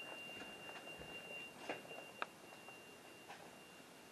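Faint room tone with a steady thin high-pitched whine and a few soft clicks, one sharper click a little over two seconds in.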